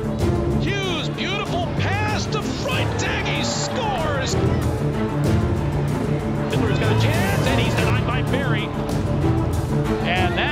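Background music with a steady low bass pattern and voices over it.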